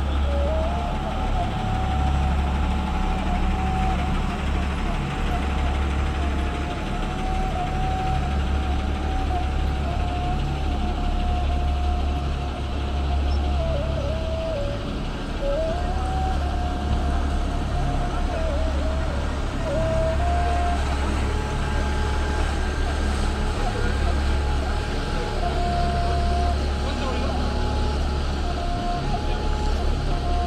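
Low, steady engine rumble from idling diesel coaches, with a thin wavering tone that steps up and down above it.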